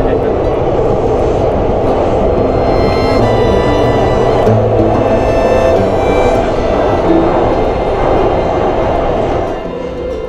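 Budapest metro train running, heard from inside the passenger car: a loud, steady rumble and rush, with background music laid over it. The sound drops somewhat near the end.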